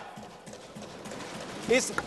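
Faint, scattered knocking from members thumping their desks in a parliamentary chamber, heard in a pause in a man's speech, with his voice resuming near the end.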